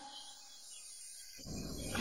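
A quiet pause between speech: faint studio room tone, with a soft low noise coming up about a second and a half in.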